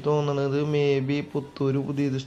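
A man's voice speaking in Malayalam in a level, drawn-out, chant-like tone.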